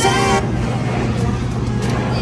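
Background pop music cuts off about half a second in, leaving the room noise of a busy eatery: a steady low hum under a noisy haze with a few faint clicks.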